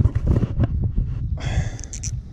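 Wind rumbling on the microphone, with a few sharp clicks and a short rasp near the end from the rod and spinning reel as a hooked fish is played.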